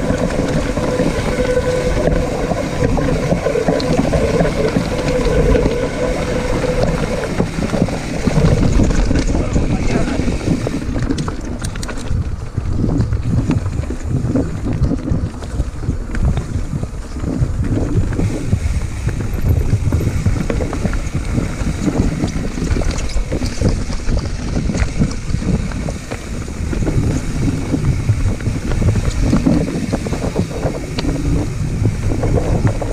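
Mountain bike rolling fast down a rocky dirt singletrack: constant wind buffeting the microphone over the tyres' rumble and the bike's irregular rattles and knocks over rough ground.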